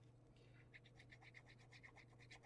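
Faint, rapid scratching from the fine metal tip of a liquid glue bottle drawn across paper as glue is laid on, starting about half a second in, at roughly eight scratchy ticks a second.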